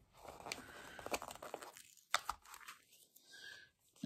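Faint rustle of paper planner sticker sheets being handled and a sticker peeled off its backing, with a few light ticks, the sharpest about halfway through.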